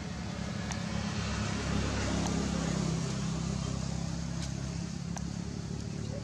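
A motor engine running with a steady low hum, swelling louder around two seconds in and then holding, with a few faint ticks.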